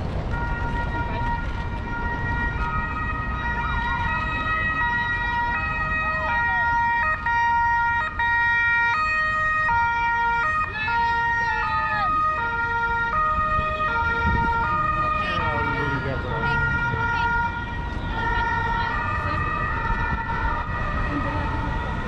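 Emergency vehicle's two-tone siren, alternating between a high and a low note about every half second, loudest around the middle, over steady street and traffic noise.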